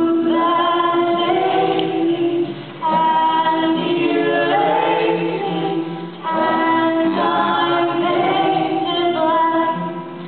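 A woman singing into a microphone over the PA, in three long held phrases with a short break between each.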